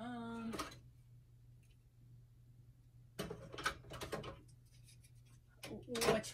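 A woman's voice: a short held vocal sound at a steady pitch right at the start, then a second or so of indistinct muttered speech about three seconds in, over a faint steady low hum.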